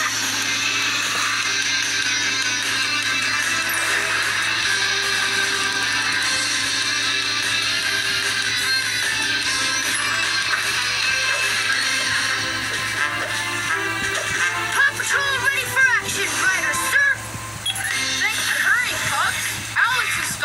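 Cartoon soundtrack music played through a television's speaker, with a dinging sound about halfway through and a character's voice in the last several seconds.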